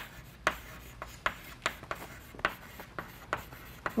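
Chalk writing on a blackboard: short, sharp chalk strokes and taps at an irregular pace of about two a second as words are written out.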